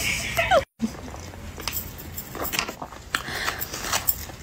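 A woman's short rising vocal hum of enjoyment while eating, cut off by a sudden moment of total silence; after it, quiet eating noises with a few faint clicks.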